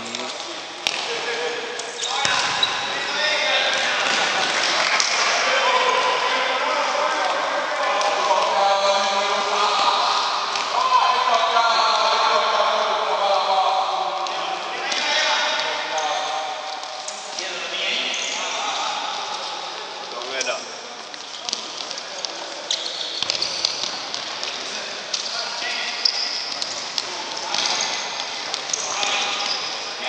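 A futsal ball being kicked and bouncing on a hard indoor court, with sharp thuds scattered through, over players' shouts and calls echoing in a large sports hall.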